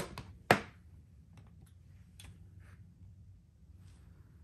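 A single sharp plastic click about half a second in as a mains plug is pulled out of a power strip, followed by a few faint ticks of handling.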